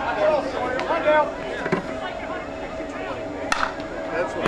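Voices of players calling out on a softball field, mostly in the first second and a half, over a faint steady hum, with a single sharp crack about three and a half seconds in.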